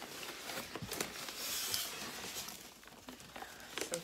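Brown kraft-paper plant wrapping crinkling and rustling as it is handled, with scattered light clicks and a louder crinkle about a second and a half in.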